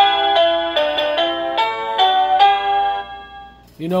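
Hampton Bay electronic doorbell chime playing one of its selectable melodies through its small speaker. It is a tune of about seven electronic notes that ends and dies away about three seconds in.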